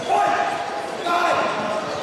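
Two short shouts, one right at the start and one about a second in, ringing in a large sports hall, over background voices and thuds on the wooden floor.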